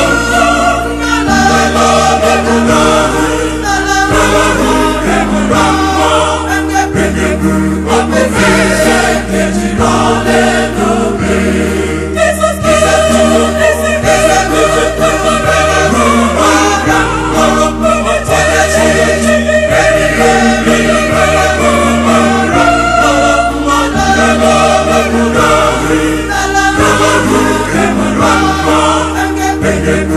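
A mixed choir of men and women singing an Igbo-language gospel song in parts, over a bass line that changes note every second or two.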